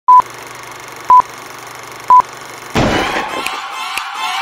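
Old-film-leader countdown sound effect: three short, identical high beeps, one a second, over a steady hum and hiss. About three-quarters of the way through, a sudden loud hit and rushing noise begins the logo intro.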